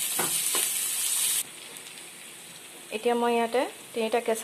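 Sliced onions and whole spices sizzling in hot oil in a kadai, with a spatula scraping through them. The sizzle cuts off suddenly about a second and a half in.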